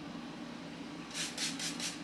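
Trigger spray bottle misting hair product: four quick spritzes in a row, starting about a second in.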